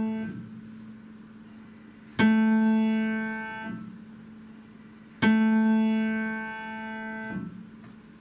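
Upright acoustic piano struck forte twice, about three seconds apart, with the ring of an earlier stroke fading out first. Each low note rings and fades for about a second and a half and is then damped off as the keys are let up. The strokes are played with the elbow lowered only after the fingertips touch the keys, for a full forte that doesn't sound harsh.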